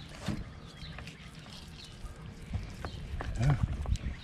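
Knife and gloved hands working through a large blue catfish on a cutting board: scattered small clicks, scrapes and knocks, with a short low grunt-like voice sound near the end.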